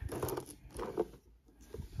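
Hands picking up and handling a cardboard trading-card box, a brief scraping rustle with a few light clicks, mostly in the first second.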